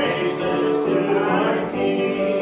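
A congregation singing a praise song, led by a man at a microphone, with musical accompaniment; the voices hold long notes.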